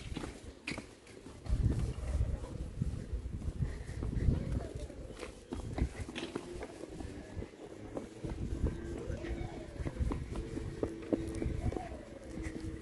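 Footsteps on stone paving as people walk and small children run, with low rumbling from wind or handling on the microphone and faint voices.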